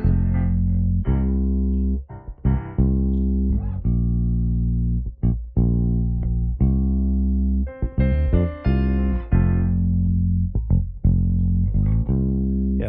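Electric bass guitar playing a simple line of long held root notes, about one a second, with piano chords alongside.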